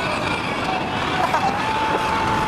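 Steady road noise inside a moving van's cabin. A short, thin high tone is held over the second half.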